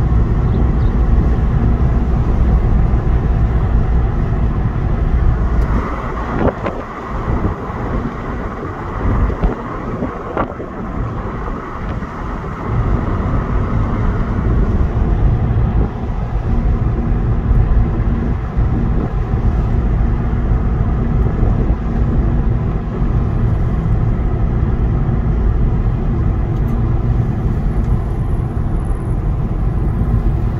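Car driving on a narrow country road, heard from inside the cabin: a steady low rumble of engine and tyre noise. It eases off for several seconds part way through, then returns to its earlier level.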